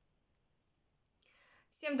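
Near silence, then a short intake of breath about a second in, and a woman begins speaking just before the end.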